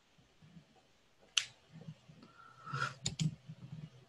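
A sharp click a little over a second in, then a brief rustle and two more quick clicks close together near the end, over faint room tone.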